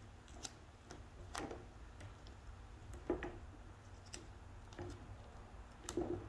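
Duct tape being twisted by hand into a rope: faint, scattered crinkles and ticks over a low room hum.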